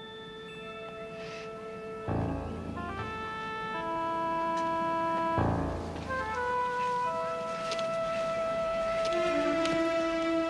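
Background music score: held notes that step from pitch to pitch, with a low hit about two seconds in and another about halfway through.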